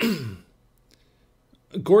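A man's breathy sigh, falling in pitch and lasting about half a second, followed by quiet until he starts speaking near the end.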